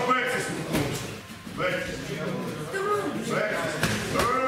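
Men's voices calling out from ringside during sparring, with a couple of short sharp thuds from the ring.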